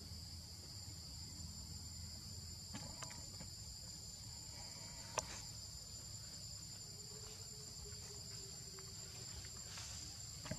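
Steady, high-pitched insect chorus holding two continuous tones, with a low rumble underneath and one sharp click about five seconds in.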